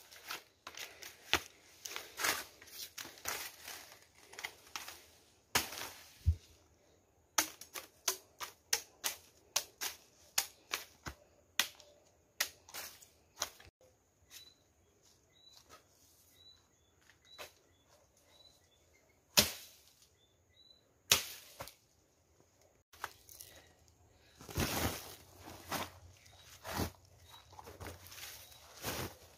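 Machete chopping through sugar cane stalks: a run of sharp, irregular chops and cracks. They come thick and fast for the first half, thin out in the middle, and come close together again near the end.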